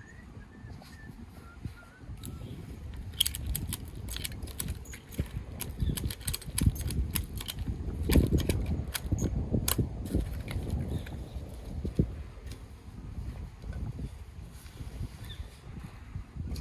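Irregular metallic clicks, taps and rattles from the metal ladder stand and its strap fittings being handled at the top, thickest in the middle, over a steady low rumble.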